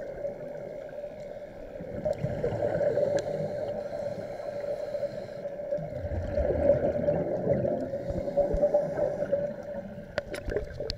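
Underwater sound of scuba divers breathing out through their regulators: muffled bubble gurgle and rumble, swelling in surges in the second half, over a steady hum.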